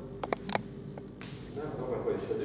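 Chalk striking a blackboard in a few quick, sharp taps about half a second in, as a short hatched mark is scribbled. A man's voice comes in near the end.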